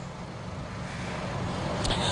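Road traffic rumble from passing vehicles, steady and low, growing slightly louder toward the end.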